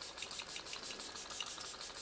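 e.l.f. Stay All Night Micro-Fine Setting Mist spray bottle pumped again and again, a quick, even string of faint, short hissing spritzes, several a second.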